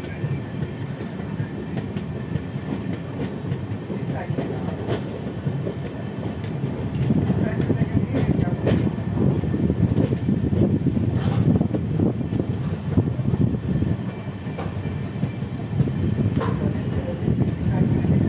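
Running noise of a passenger express train heard from its own coach: a continuous rumble of wheels on the rails, with scattered sharp clicks from rail joints. It grows louder about seven seconds in.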